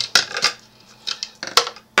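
A handful of sharp clacks from a plastic ruler being handled and knocked against the desk and other tools.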